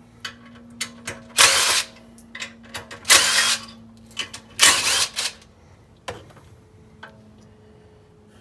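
Cordless power driver with an 8 mm socket spinning out the valve cover bolts on a Predator 212 Hemi engine, in three short whirring bursts about a second and a half apart, with small clicks between them.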